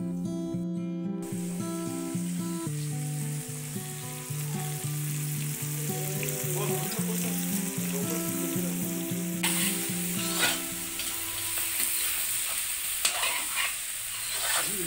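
Meat frying and sizzling in a large wok over a wood fire, stirred with a metal ladle that scrapes the pan several times late on. The sizzle gets much louder about two-thirds of the way through. Background guitar music plays over the first part and fades out near the end.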